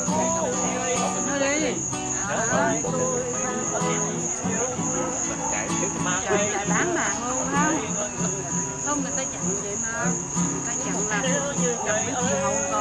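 Crickets chirping in a steady, high-pitched, pulsing chorus, with voices and music lower down.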